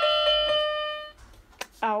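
Roll-up silicone electronic keyboard playing a single note, held for about a second and then fading out; quite loud.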